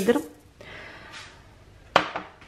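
Unrefined granulated sugar pouring into a stainless steel food-processor bowl, a soft hiss lasting under a second. A single sharp click of hard parts knocking together comes just before the end.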